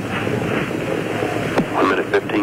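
Steady hiss and rumble of a band-limited 1980s launch-broadcast audio track. A mission-control commentator's voice starts near the end.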